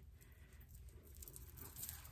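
Near silence: faint rustling of hair and hands as the wig's hair is tucked behind the ear, over a low room hum.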